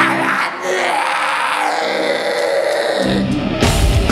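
Live hardcore band opening a song through a loud PA: ringing guitar with a held yell over it, then bass and drums come in heavily about three seconds in, with the full band playing by the end.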